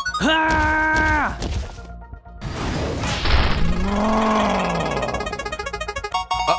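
Cartoon sound effects: a held synthesized tone for about a second, a short noisy crash-like burst about two and a half seconds in, then a tone that rises and falls.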